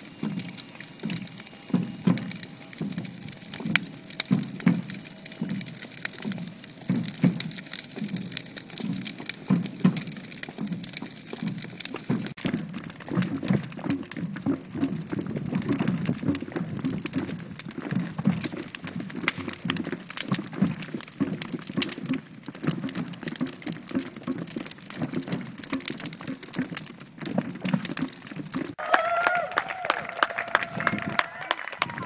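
A large wood fire crackling steadily, with many sharp pops, as the timber frame of a replica longship burns. A pitched sound comes in near the end.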